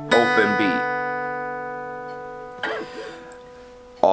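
Acoustic guitar with a note picked right at the start on top of notes still ringing. The strings then ring on together and fade slowly away.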